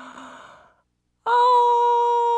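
A woman's short breathy sound, then about a second in a loud, long, high 'oooh' of delight, held at one pitch and cut off sharply.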